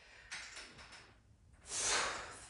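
A man breathing out hard through his mouth twice, with the effort of dumbbell chest presses. The first breath is soft and the second, near the end, is louder.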